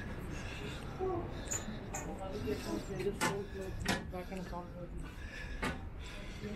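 Indistinct voices of people talking nearby, with three sharp clicks: two about a second apart in the middle, a third near the end.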